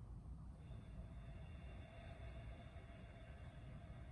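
Near silence: quiet room tone with a low rumble, and a faint steady high tone that comes in about half a second in.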